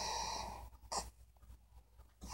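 A man's breath out through the mouth, trailing off from a hesitating "uh" and fading over about half a second, then a short click about a second in.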